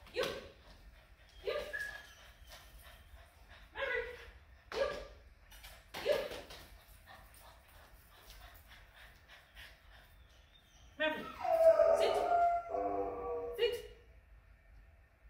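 French bulldog puppy barking in short single barks, about six of them spread through the first half.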